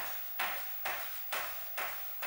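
Sneakers landing on a wooden floor in small bounces on the spot, a steady rhythm of soft thuds about two a second: the micro bouncing that underlies shuffle-dance steps.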